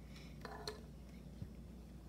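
A quiet room with a steady low hum, a brief soft vocal murmur about half a second in, and a couple of faint clicks from small plastic toy pieces and packaging being handled.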